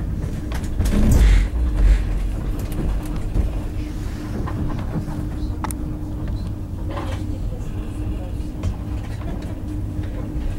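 Passenger train running through a station yard, heard from inside the carriage: a steady low rumble with a faint steady hum and scattered clicks and knocks from the wheels on the track. The rumble swells louder for about a second near the start.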